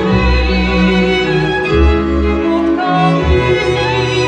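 String orchestra of violins, cellos and double bass playing sustained bowed chords over changing bass notes, accompanying a solo mezzo-soprano voice.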